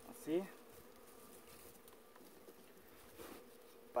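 Honey bees buzzing around their wild nest, a faint steady hum, while smoke is used on them as the comb is cut out.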